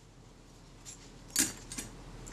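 Small metal parts of a Kodak Retina IIa's frame counter being picked up and handled: a short click about one and a half seconds in, with a few fainter ticks before and after it.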